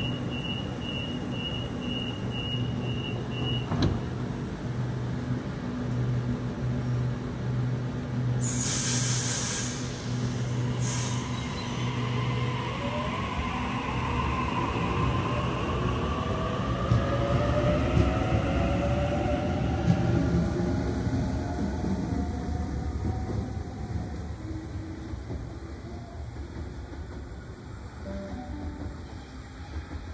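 Double-deck electric suburban train at the platform: door-closing beeps for the first few seconds, a thud as the doors shut, then a loud hiss of air about nine seconds in. The train then pulls away with a rising motor whine that fades over the last several seconds.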